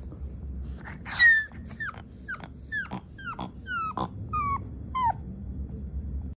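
A puppy whimpering: a series of about ten short, high cries, roughly two a second, each sliding down in pitch. The loudest cry comes near the start.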